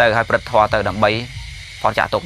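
A man's voice preaching in Khmer, breaking off for about half a second and starting again near the end, over a steady background hiss.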